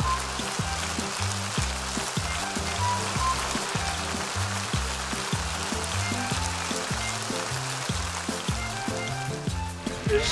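Theatre audience applauding over upbeat stage music with a steady, bouncing bass line.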